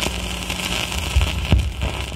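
Surface noise of a 78 rpm shellac record once the music has stopped: steady hiss and crackle from the groove, with a couple of low thumps a little past a second in.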